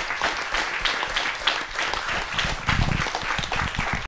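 A small group of people applauding, with many hand claps overlapping irregularly.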